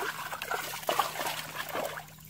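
Hands splashing and squelching in shallow muddy water, an irregular wet churning with small sharp slaps, dying away near the end.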